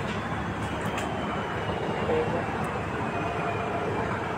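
Steady, even drone of river launch engines running, with faint voices in the background.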